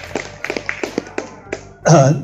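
A quick run of light taps or clicks, several a second, fading out after about a second; a man's voice starts near the end.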